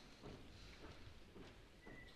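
Faint, irregular knocks of stage noise, about five in two seconds, like steps and handled props on the stage boards of a live opera performance, with no music.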